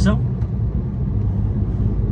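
A heavy truck's diesel engine and road noise heard inside the cab while cruising: a steady low drone.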